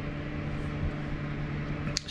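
Steady low machine hum with a faint even hiss, unchanging throughout.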